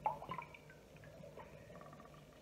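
A metal can lowered into a pot of water, with a brief small splash in the first half-second.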